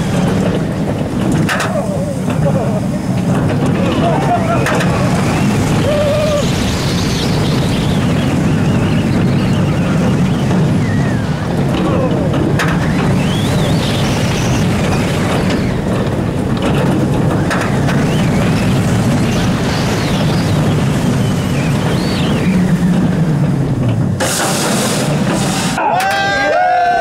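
Bolliger & Mabillard hyper coaster train running at speed along its steel track, with a loud rumble and wind rushing over the microphone. Riders scream and whoop over it, shouting clearly near the end.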